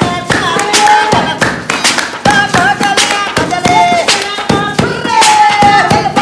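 Music for Punjabi giddha dancing: a held, wavering sung melody over sharp claps keeping a fast, steady beat.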